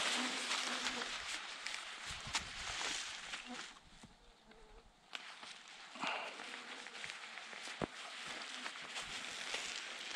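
Flying insects buzzing close around the microphone, over a low rustle, with a few faint clicks.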